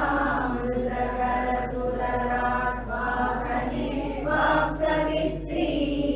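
A group of voices chanting a line of a Sanskrit shloka in unison, repeating it after the teacher in a call-and-response recitation.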